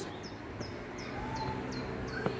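A small bird calling with short, high chirps repeated about three times a second, over faint steady background noise.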